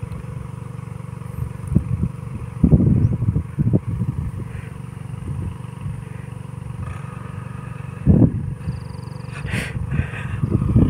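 Tractor engine running steadily, with a few louder low rumbling bursts, the strongest about three seconds in and again near eight seconds.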